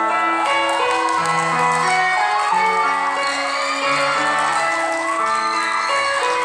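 Live rock band playing through a hall PA, with drum kit, guitars, bass and keyboard. Held chord notes change every half second or so under a melody line that bends up and down in pitch.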